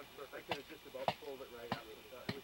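A boot stamping an aluminium snow picket down into firm glacier snow: a few sharp knocks about half a second apart.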